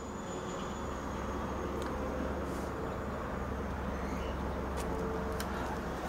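Steady low hum under a faint even background hiss, with a couple of faint ticks.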